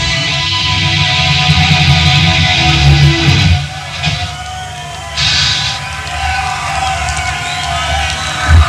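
Black metal band playing live: distorted electric guitars, bass and drums. About three and a half seconds in the full band drops out, leaving a sustained guitar tone ringing on.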